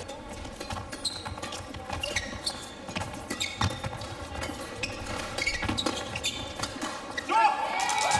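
A badminton doubles rally in a large hall: rackets strike the shuttlecock again and again in short sharp hits, with players' shoes squeaking on the court. A voice calls out near the end.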